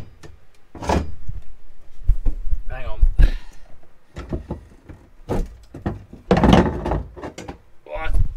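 Irregular clunks and knocks of steel parts being handled and set down, a roll-cage bar and seat-mount pieces moved about in a stripped car shell, with a heavier thud about six and a half seconds in.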